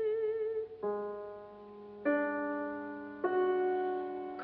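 Piano accompaniment playing three chords about a second apart, each struck and left to ring and fade. A soprano's held vibrato note dies away just before the first chord.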